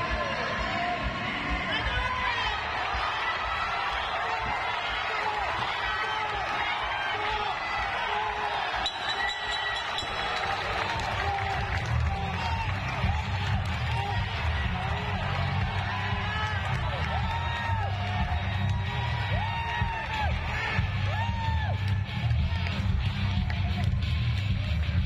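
Arena sound-system music with a heavy bass beat that comes in about halfway, under voices and crowd chatter.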